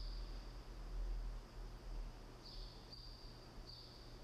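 A faint, high, steady insect trill, heard briefly at the start and then in two stretches of about a second from halfway on, over a low steady background rumble.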